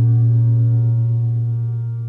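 A held low keyboard note or pad with a rich stack of overtones, steady and slowly fading, ringing on alone between sung lines.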